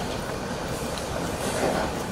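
Steady low rumble of room noise in a large hall, with faint rustling and a few light knocks.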